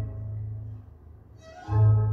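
Orchestral music with bowed strings, the cellos and double basses holding strong low notes. A phrase fades out about a second in, and a new, louder phrase enters near the end.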